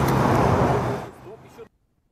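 Road traffic noise, a car going by, with a steady low hum under the rushing noise. It fades about a second in, and the sound cuts out completely near the end.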